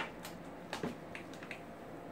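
Light clicks and taps of small plastic parts being handled while an antenna booster is fitted, a quick string of them that stops about a second and a half in.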